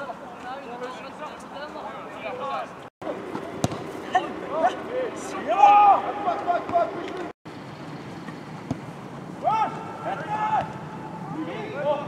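Footballers' shouts carrying across an outdoor pitch, with one sharp knock about four seconds in. The sound drops out completely for an instant twice.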